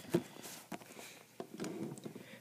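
Handling noise: a sharp knock just after the start, then faint rustling and small taps as a diecast toy monster truck and the camera are moved about on a wooden surface.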